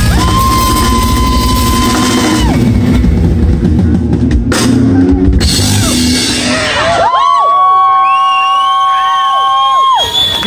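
Live rock band with drum kit and cymbals playing out the end of a song. About seven seconds in the drums and bass drop away, and a few high held tones ring on until just before the end.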